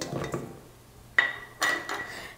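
Metal stand-mixer bowl knocked twice, the clinks about half a second apart, each leaving the bowl ringing on a steady high note.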